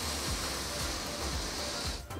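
Aerosol can of whipped cream spraying: a steady hiss that cuts off near the end, over quiet background music.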